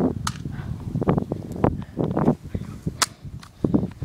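Scattered knocks and thumps, with two sharp cracks, one about a quarter second in and one about three seconds in.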